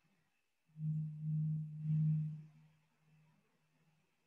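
A man humming on one low, steady note for about two seconds, starting just under a second in and swelling and easing a few times.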